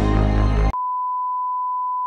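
Music cuts off abruptly under a second in, replaced by a steady, unbroken high-pitched beep: the test-card tone of a TV with no signal.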